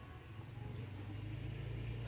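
Faint, steady low hum of background noise with no distinct event.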